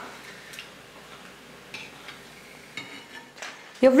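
Sago (javvarisi) vadam frying in hot oil: a quiet, steady sizzle, with a few light clicks of a metal slotted ladle against the pan.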